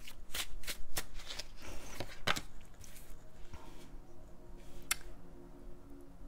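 A deck of tarot cards being shuffled by hand: a quick run of crisp card slaps and flutters, about three a second, that thins out after about two and a half seconds, with one sharp snap of a card just before the end.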